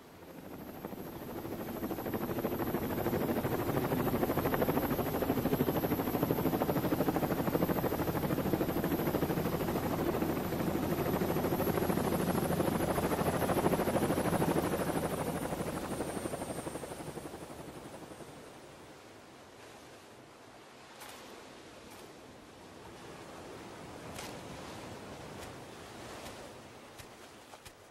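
Robinson R44 Raven helicopter's rotor and engine noise swelling in over a couple of seconds, staying loud, then dying away about two-thirds of the way through, with a faint high whine slowly sinking in pitch as it goes.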